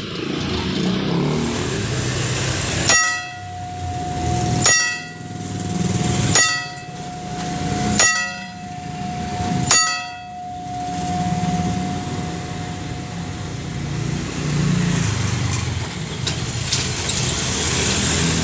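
Railway level-crossing warning bell (genta) struck five times, a little under two seconds apart, each strike ringing on, over the steady noise of passing cars and motorcycles. The bell is the signal that a train is about to pass the crossing.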